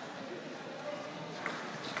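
Table tennis ball clicking off bat and table during a rally: two sharp clicks about half a second apart near the end, over the background hum of the hall.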